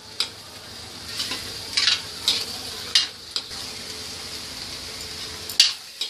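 Thick tomato-onion masala sizzling in a metal kadai as a metal ladle stirs it, with a scrape or clink of the ladle against the pan every second or so over a steady low sizzle. The masala is being roasted (bhuna) until it is cooked through.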